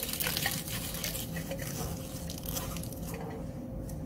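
Aluminium foil crinkling as gloved hands crimp it over the mouth of a glass conical flask, in a run of irregular crackles that thin out toward the end.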